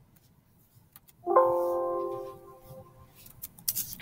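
Computer system alert chime: a short chord-like tone about a second in that fades away over about a second and a half, the warning sound of a dialog box popping up. A few faint clicks near the end.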